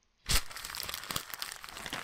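Destruction sound effects from the soundtrack of a CG animation of cannonballs knocking down a castle of playing cards. One sudden heavy impact comes about a quarter second in, then a dense crackling, crunching clatter of debris.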